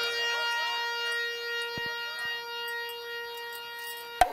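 Music: a single sustained note from a wind or reed instrument, held steady and slowly fading, with faint short wavering notes over it.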